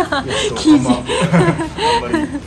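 Chuckling laughter, mixed with a few laughing words.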